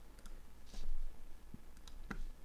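A few light computer clicks, a pair near the start and another pair near the end, with a short breathy noise a little before the middle.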